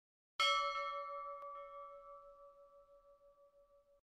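A single bell chime sound effect, struck about half a second in and ringing down slowly with a wavering decay. There is a faint click about a second later, and the chime cuts off suddenly at the end.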